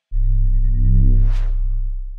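Electronic logo sting: a deep, loud bass tone that starts suddenly and holds, with a brief airy whoosh that swells and fades about one and a half seconds in.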